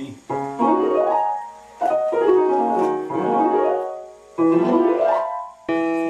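Piano keyboard playing quick runs of notes up and down the keys, in about four separate phrases that each start abruptly.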